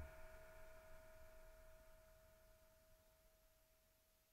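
Near silence: the last held note of the song's accompaniment dying away, a single faint steady tone that fades out over the first few seconds.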